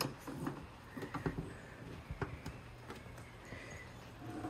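Scattered faint clicks and light knocks of a small metal tool being fitted into the latch of a convertible soft-top storage lid while a hand presses the lid down to lock it, over a low steady hum.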